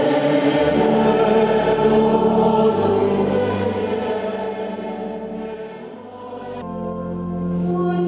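Church choir singing a slow hymn in held chords; the sound fades down to about six seconds in, then swells again on a new sustained chord.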